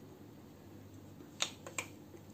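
Three quick sharp clicks, the first the loudest, from oily hands pressing and shaping a ball of mawa dough into a modak, over a faint steady hum.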